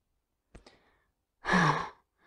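A woman's breathy, voiced sigh, about half a second long, falling in pitch, starting about a second and a half in. Two faint clicks come just before it.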